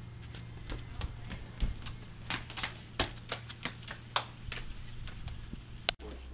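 A quick, irregular run of sharp taps and knocks, about three or four a second at their busiest, over a steady low hum.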